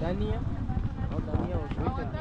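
People talking indistinctly at close range, over a steady low rumble of outdoor noise.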